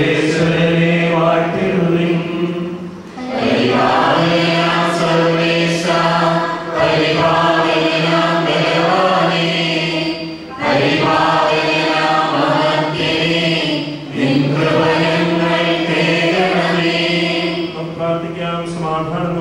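A priest's voice, amplified through a microphone, chanting a liturgical prayer. The sung phrases run three to four seconds each, with short breaks between them.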